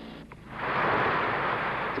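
A loud, steady rushing noise with no clear pitch. It swells up about half a second in and then holds.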